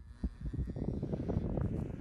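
Wind buffeting the microphone outdoors: an irregular low rumble with rustling.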